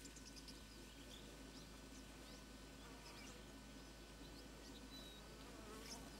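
Near silence: faint outdoor ambience with scattered brief, faint high chirps.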